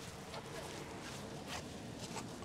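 Quiet outdoor street background: a low even noise with a faint steady hum and a couple of faint soft ticks.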